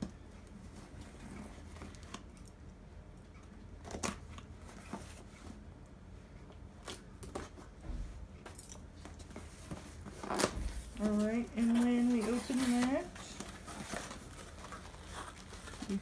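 A small key knife slitting the packing tape of a cardboard box, with scattered scrapes, clicks and tearing of tape and cardboard. A woman's voice is heard for about two seconds around eleven seconds in.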